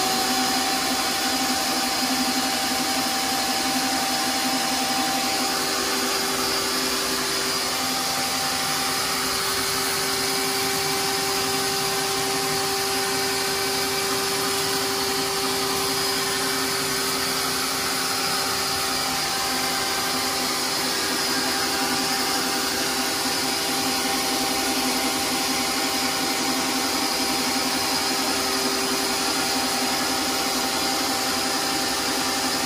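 A large wet/dry shop vacuum with a small micro-cleaning nozzle runs steadily, a constant loud hum with a steady whine. It is sucking out the bleach-rinse residue and dirt from the bottom of a window air conditioner.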